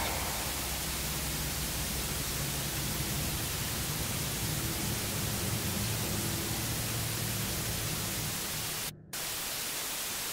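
Steady hiss of TV-style white-noise static with a faint low hum underneath. It cuts out for an instant near the end, then resumes.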